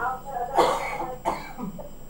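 A person coughing twice: a longer cough about half a second in, then a shorter one just after a second in.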